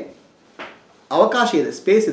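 A man speaking slowly in Kannada, in short phrases with pauses between them, with a brief soft noise a little over half a second in.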